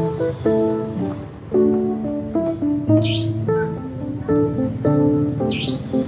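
Acoustic guitar background music, over which a caged female Asian fairy-bluebird gives two short high calls, about three seconds in and again near the end.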